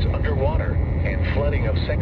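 NOAA Weather Radio's automated synthesized voice reading a flood warning, over a steady low rumble.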